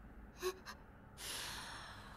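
A man's breathy exhale through the nose, a stifled laugh starting a little over a second in, preceded by two brief faint voice blips.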